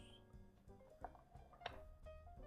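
Faint background music of plucked notes, with two faint taps, about a second apart, from hands handling a small cardboard game box.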